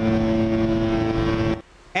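Cruise ship horn blowing one long, steady, deep blast that cuts off suddenly about three quarters of the way through.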